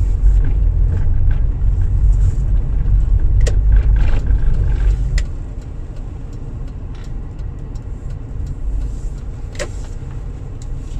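Car cabin while driving: a steady low rumble of engine and road, which drops noticeably in level about halfway through. A few short, light clicks sound over it.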